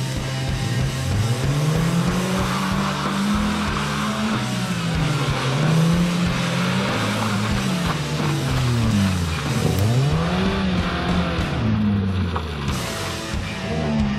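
A Nissan Sunny sedan's engine revving up and down again and again as the car is driven hard around a tight cone course at an autotest, with music underneath.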